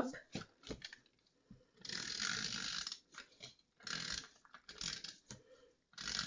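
A sheet of designer paper being unfolded and handled: a few light clicks, then a scraping rasp of about a second, followed by two shorter rasps.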